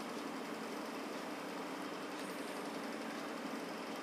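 Steady low hum over a faint, even hiss, unchanging throughout: background room noise with no distinct event.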